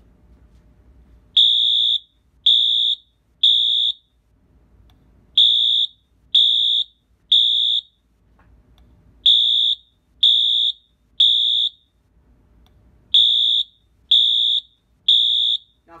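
Wheelock AS-24MCC fire alarm horn strobe sounding its loud, high-pitched electronic horn in the temporal-three evacuation pattern: three short blasts, a pause, then three more, starting about a second in and repeating four times.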